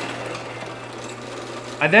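Drill press running with a steady hum as its bit bores a hole down into a wooden cannon barrel.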